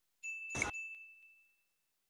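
Notification-bell sound effect: a single high ding that rings out and fades over about a second and a half, with a short click just after it starts.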